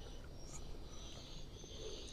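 Quiet background: faint hiss with a faint, steady high-pitched tone and a few tiny ticks.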